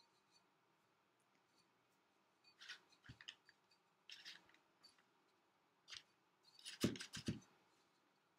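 Faint scattered handling sounds as terracotta pots are worked on a newspaper-covered table: scrapes and rustles a few seconds in, then a quick cluster of soft knocks about seven seconds in as the pots are moved and set down.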